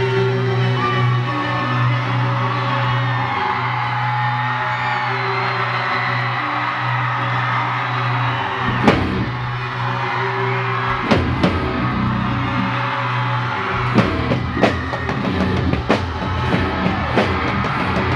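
Rock band playing live: a long held low note with sustained tones above it, then drums coming in about nine seconds in and building into a steady beat.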